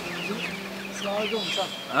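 Chickens clucking, a run of short calls.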